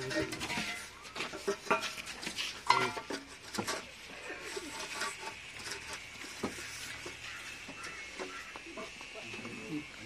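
Bricklaying: scattered knocks and clicks of clay bricks being set on mortar and tapped into line against a metal straightedge, with voices in the background.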